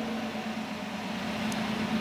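2006 Dodge Charger R/T's 5.7-litre Hemi V8 idling with a steady, even hum.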